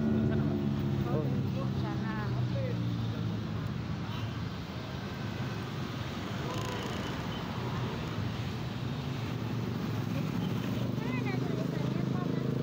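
Street ambience at night: a steady hum of passing traffic and motorbikes, with snatches of people's voices about a second in and again near the end. Background music fades out just as it begins.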